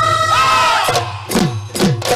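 Massed Bihu music with a crowd shouting: a held high note gives way about a second in to sharp dhol drum strikes about half a second apart.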